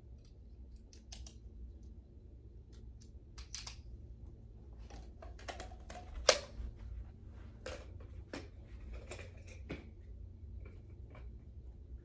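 Small plastic clicks and rattles of a handheld flashlight being handled and put back together, with batteries and cap being fitted. One louder click about six seconds in.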